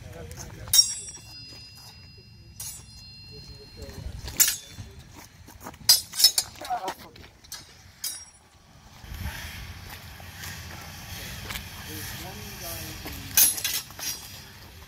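Steel sparring longswords clashing: a series of sharp metallic clinks. The first, about a second in, rings on for a second or two; more strikes follow over the next seven seconds, and one more comes near the end.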